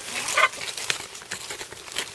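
Cabbage leaves rustling and crinkling with small crackles as a hand parts them. There is a brief soft vocal sound about half a second in.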